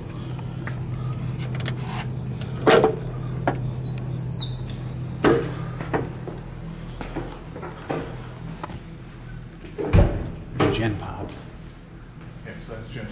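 Scattered knocks and clunks over a steady low hum, the loudest about three seconds in and again near ten seconds, with a short high squeak about four seconds in.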